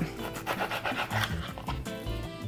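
Knife sawing through raw flat iron steak on a cutting board in quick, rhythmic strokes, over background music.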